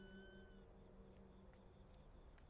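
Near silence: a faint high tone, falling slightly in pitch, fades out about half a second in, leaving only a low hum and hiss.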